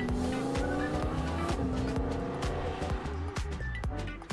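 Audi R8 Spyder's V10 engine accelerating hard away, its pitch climbing, dropping at a gear change about a second and a half in, then climbing again before it fades.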